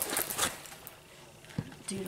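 Clear plastic film over a diamond-painting canvas rustling and crinkling as the canvas is handled. It is busiest in the first half second, then quieter, with a single sharp click about one and a half seconds in.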